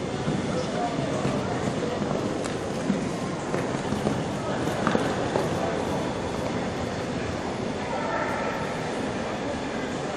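Steady, noisy indoor-arena background: a continuous rumble with indistinct voices, which become a little clearer near the end, and a few faint knocks.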